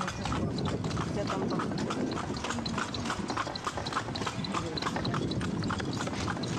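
Horse's hooves clip-clopping in a steady rhythm, over a low rumble.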